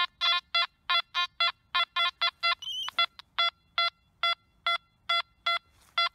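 Nokta Makro Anfibio metal detector sounding a quick run of short, same-pitched beeps, about three a second, as its coil passes back and forth over a stack of three coins (quarter, nickel and penny), with a brief higher warbling tone a little before the middle. The repeated beeps are the detector's target signal for the coin stack.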